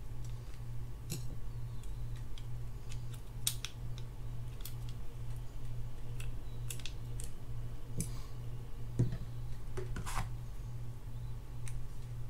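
Irregular sharp metallic clicks and ticks from steel tweezers working small parts inside the opened body of a Shimano Spirex 2500FG spinning reel. A steady low hum runs underneath.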